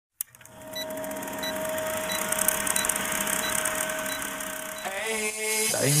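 Film projector sound effect: a steady mechanical whir with a faint tick about every two-thirds of a second. Near the end it gives way to the opening of a song with a voice.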